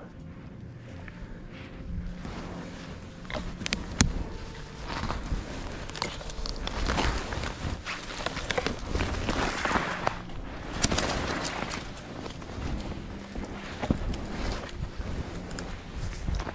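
Someone moving on skis through deep snow: irregular crunching and swishing steps, with a couple of sharp knocks.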